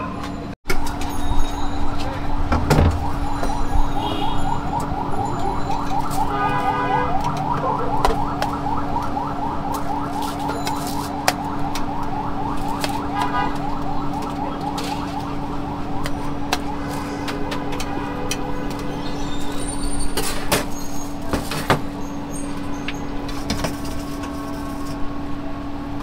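A fast warbling siren-like tone sounds for over ten seconds, swelling around eight seconds in and fading by about sixteen. Under it runs a steady low hum, and a few sharp clicks come near the end.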